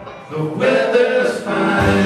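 Live rock band with guitars, bass, keyboards and drums: the band cuts out at the start, voices sing over the gap, and the full band with bass and drums comes back in near the end.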